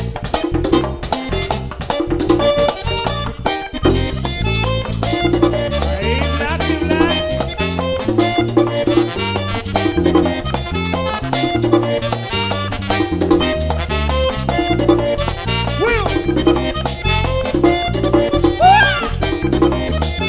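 Live band playing an instrumental passage of Latin dance music: accordion, saxophone, güira scraping and electric bass over a steady repeating rhythm, with melodic lines sliding in pitch near the end.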